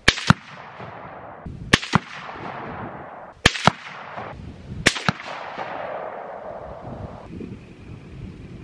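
Four rifle shots at a Tannerite target. Each shot is followed a fraction of a second later by a second sharp crack and an echo that fades away. The target is hit but the Tannerite does not detonate, so no explosion follows.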